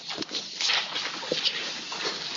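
Handheld microphone being passed between people: rustling and bumping handling noise with a few clicks, louder after about half a second.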